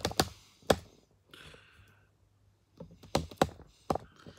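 Irregular sharp clicks and knocks close to the microphone, handling noise as the corn snake moves over her shoulders, with a short soft hiss about a second and a half in.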